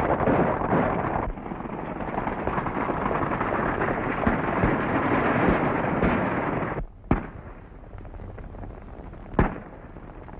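A group of horses galloping with a dense, steady rush of hoofbeats that drops away suddenly about seven seconds in. Two sharp gunshots follow, about two and a half seconds apart.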